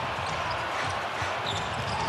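A basketball being dribbled on a hardwood court, over a steady background of arena noise.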